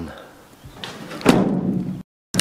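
A van's cab door slammed shut about a second and a half in: one sharp thump, with rustling from someone climbing into the seat around it.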